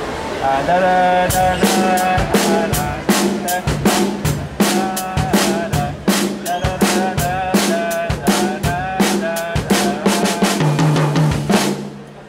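Acoustic drum kit played in a steady groove: snare and cymbal strokes over bass drum, with the bass drum placed on the upbeat accents. The playing stops abruptly just before the end.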